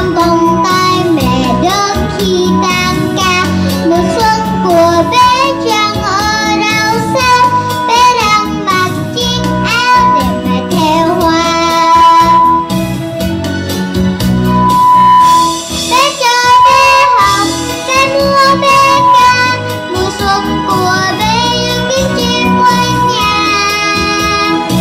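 Young girls singing a Vietnamese children's spring song into microphones, with live instrumental accompaniment.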